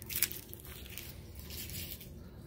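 Faint rustling and handling noise from packaging and objects being moved about, with one light knock about a quarter-second in.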